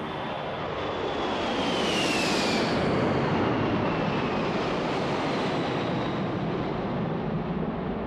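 Boeing 747's four jet engines running at climb power as the jet passes overhead. A high fan whine slides down in pitch as it goes by, and the noise swells to a peak a few seconds in, then slowly fades.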